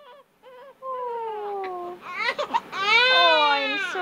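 Two-week-old newborn girl crying, upset at being washed. A few short whimpers come first, then a long wail that falls in pitch about a second in, then a louder, longer cry that rises and falls in pitch near the end.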